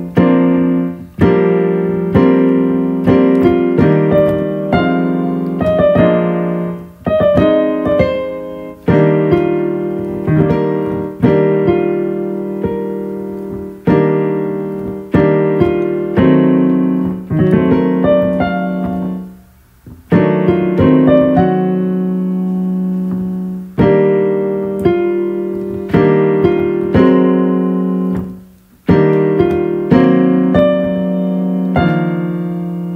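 Digital keyboard with a piano voice playing a string of chords under a short melodic figure, each chord struck and left to die away, as a reharmonization of the figure is tried out. The playing stops briefly twice, about two-thirds of the way through and near the end.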